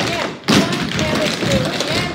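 Dancers' feet striking a wooden studio floor together in a rehearsed routine, with a loud stamp about half a second in and quicker steps after it.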